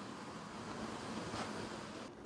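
Faint steady background hiss of room tone, with no distinct event.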